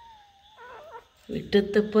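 A sleeping puppy's faint, thin, high whimper that wavers in pitch through the first second. A man's loud voice cuts in a little over a second in.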